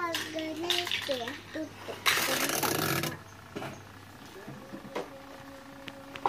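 Indistinct background voices, then a rushing hiss lasting about a second, starting about two seconds in. A faint steady hum follows in the last part.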